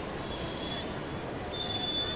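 Two high-pitched, steady whistle blasts of about half a second each, the second starting about a second and a half in, over the general noise of a stadium crowd.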